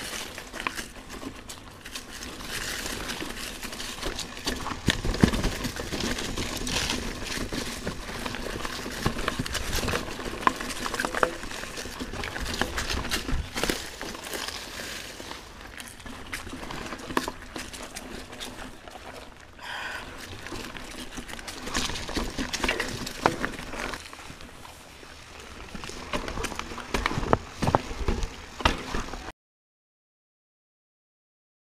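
Mountain bike riding over rocky, rooty dirt singletrack: tyres crunching over the trail, with many clicks and knocks as the bike rattles over stones. The sound cuts off abruptly near the end.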